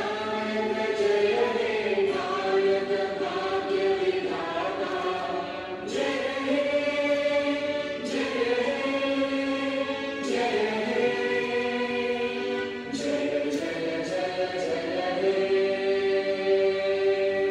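A choir singing the national anthem slowly in long held phrases, with several voices together.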